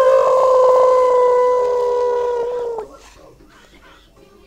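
A long, drawn-out vocal "ohhh" held on one high, steady note for nearly three seconds, sagging slightly before it stops.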